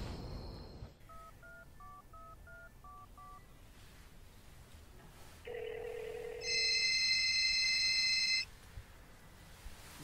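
Phone keypad tones: about seven short two-note beeps as a number is dialed, then a telephone ringing tone a couple of seconds later, the loudest sound, lasting about two seconds.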